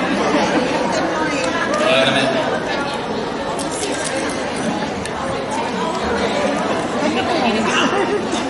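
Several people talking at once: overlapping chatter with no single clear voice.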